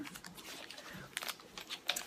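A wrapped chocolate bar being handled and its wrapper worked open: a quiet, irregular run of small clicks and crinkles.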